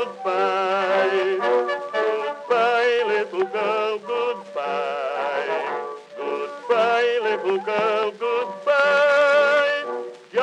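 Instrumental interlude from an early acoustic Edison recording: the studio orchestra plays the melody with brass to the fore, the sound thin and without bass.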